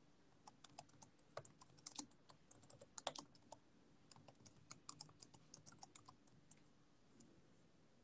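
Faint typing on a computer keyboard: a run of irregular key clicks, several a second, that stops about six and a half seconds in, over a low steady room hum.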